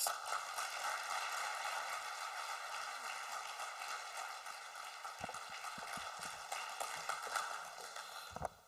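Audience applauding steadily, easing off a little near the end.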